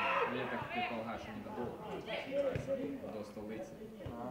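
Several people's voices talking and calling out, overlapping, with no clear words.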